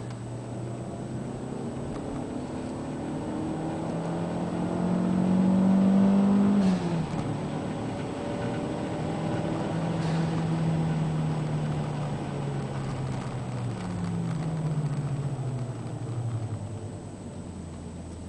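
Toyota MR2 Turbo's turbocharged four-cylinder engine heard from inside the cabin under hard acceleration on track. The revs climb, drop sharply at an upshift about seven seconds in, climb again, then fall away near the end as the car slows for the next corner.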